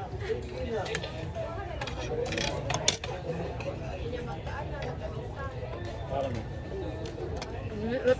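Voices talking in the background over a steady low hum, with one sharp click about three seconds in.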